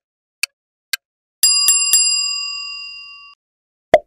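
Quiz countdown sound effect: sharp clock-like ticks, about two a second, then a bell struck three times in quick succession that rings out and fades over about two seconds. A short sharp click follows near the end.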